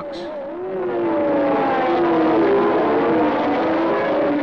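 A field of 1979 Formula One race cars at full throttle, several engine notes overlapping and rising and falling in pitch as the cars accelerate and change gear. The sound dips at first and swells about a second in.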